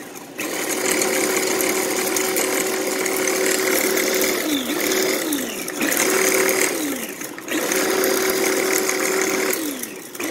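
Small electric food chopper grinding dried catnip leaves and stems in pulses: about four runs of a steady motor whine, the first about four seconds long, each winding down in pitch when the button is let go.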